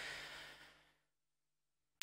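A man's breath close to a handheld microphone: a soft, breathy rush that fades out within the first second.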